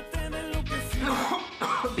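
Music with a person coughing, twice in the second half.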